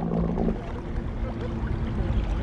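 Wind buffeting the microphone over water lapping around a kayak, with a faint steady low hum underneath.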